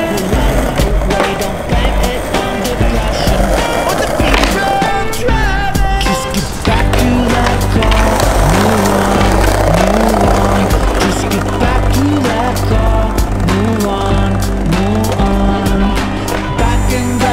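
A skateboard being ridden, its wheels rolling with sharp clacks of the board, mixed under loud music with a heavy bass line.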